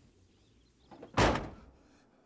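A vehicle door slammed shut once, a little over a second in: a single loud, short thud that dies away quickly.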